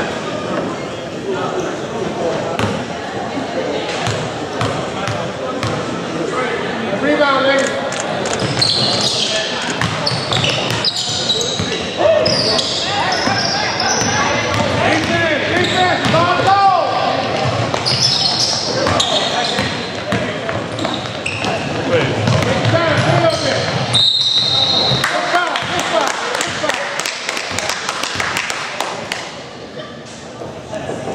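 Live high school basketball game in an echoing gym: a basketball bouncing on the hardwood, players' sneakers and calls, and people shouting and talking throughout. About 24 seconds in, a short high whistle blast sounds, the referee stopping play before the players line up for free throws.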